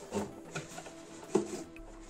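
A finned aluminium heat sink assembly being handled and pulled out of a cardboard box: a few knocks and clunks, the loudest about a second and a half in, over a steady low hum.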